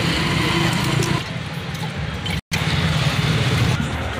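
Steady street traffic noise: a continuous low rumble of vehicle engines passing close by, broken by a short total dropout to silence about halfway through.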